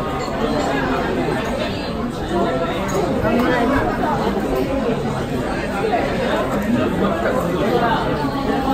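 Steady chatter of many overlapping voices: diners talking in a busy restaurant dining room.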